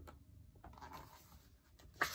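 Near silence with a faint click and soft paper rustling as a hardcover picture book is handled and moved aside.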